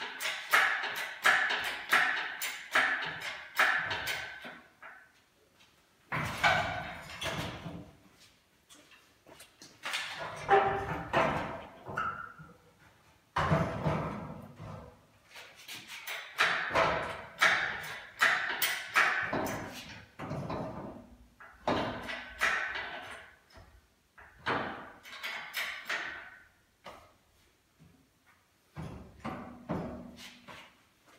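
Hand-pumped hydraulic ram of an engine crane, worked in bursts of quick strokes that squeak and click, with some metal knocks as the subframe shifts on its strap.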